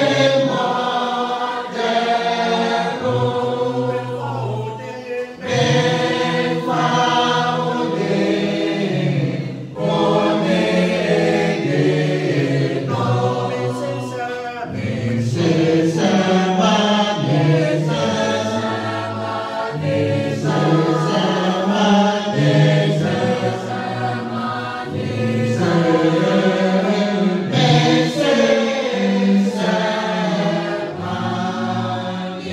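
A group of voices singing a hymn together a cappella, with no instruments, loud and continuous.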